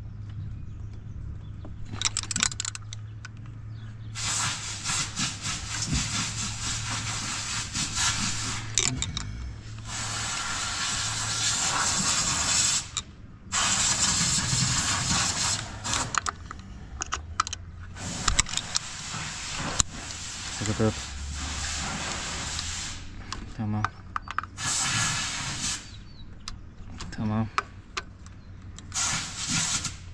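Socket ratchet clicking in stretches of rapid strokes as bolts on a Ford Transit's water pump pulley are turned, the pulley held against a wedged screwdriver. A low steady hum runs under the first half.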